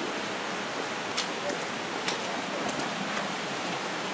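Steady rushing of a mountain stream, with a couple of light clicks about one and two seconds in.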